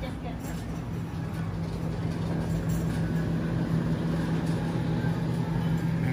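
Supermarket background: a steady low hum with rumbling underneath, slowly growing a little louder.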